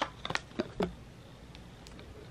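A Zara perfume's cardboard box being handled and its glass bottle slid out: a few light clicks and scrapes of card and glass, bunched in the first second.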